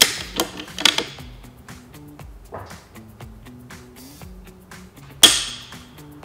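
Browning X-Bolt bolt-action rifle being handled: a few sharp metallic clacks in the first second, then one loud, sharp click about five seconds in as the trigger breaks under a digital trigger pull gauge. Background music runs underneath.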